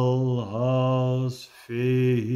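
A man chanting rune names in a long, sustained drone, the vowels slowly shifting. His pitch dips briefly about a quarter of the way in, and the voice breaks off for a moment past the middle before starting again.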